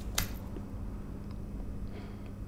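A single short, sharp click a fraction of a second in, over a steady low hum.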